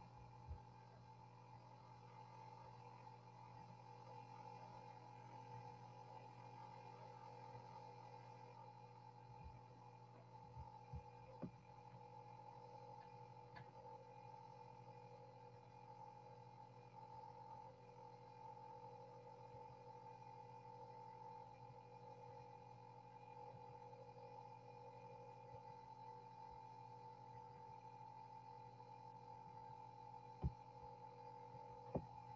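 Near silence: a faint steady electronic hum with two thin high tones, with a few faint clicks a little before the middle.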